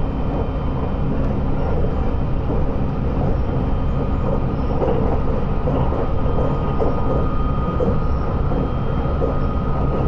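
Running noise of a JR West 681-series electric limited-express train heard inside a motor car: a steady rumble of wheels on rail, with a faint, steady high tone.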